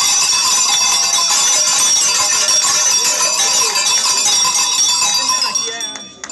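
Many bells jangling together, shaken without a break, then cutting off suddenly just before the end.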